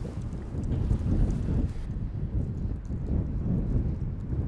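Wind buffeting the microphone outdoors: an uneven low rumble that rises and falls.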